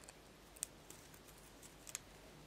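Near silence: room tone with a few faint, short clicks, the clearest a little after half a second in and another pair near the end.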